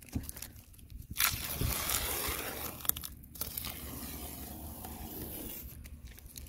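Blue painter's masking tape being peeled off a boat's gelcoat in one long strip: a continuous tearing rip that starts about a second in, with a brief break partway through.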